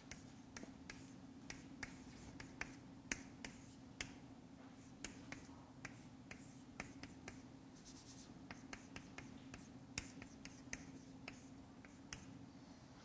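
Chalk on a blackboard while structures are written: faint, irregular sharp taps and short scratches, several a second, over a low steady room hum.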